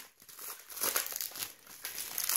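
Packaging crinkling in several short, irregular rustles as it is handled.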